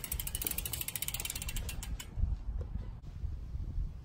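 Bicycle rear hub freewheel ticking rapidly as the wheel coasts, the clicks spreading out as it slows and stopping about two seconds in. A few dull bumps follow.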